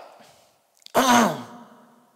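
An elderly man's sigh about a second in: a breathy exhalation whose voiced pitch falls, then holds briefly before fading out.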